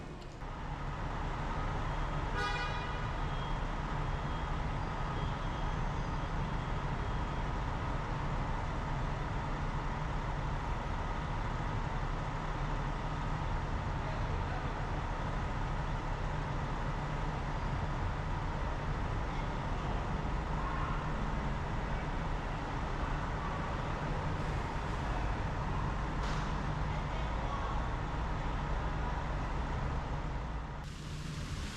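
Steady low rumble of a vehicle engine running at an airport curbside, with a faint steady whine, over traffic noise. There is one short sharp sound about two seconds in.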